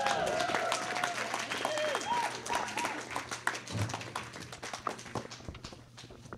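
Comedy-club audience applauding a comic onto the stage; the dense clapping thins out and fades toward the end, with a low thump about four seconds in.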